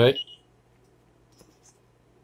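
A man's word trailing off, then near silence: room tone with a faint steady low hum and a couple of faint ticks.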